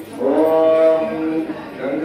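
A voice chanting a Hindu puja mantra, holding one long drawn-out syllable that rises slightly as it starts, then breaking briefly before the next phrase begins near the end.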